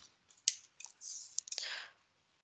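A few faint, short clicks from pen input while a number is written on a computer whiteboard, with soft hissy noise between them.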